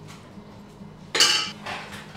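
A sharp metallic clank about a second in, with a lighter clatter after it: metal kitchenware and the range cooker being handled while cooking.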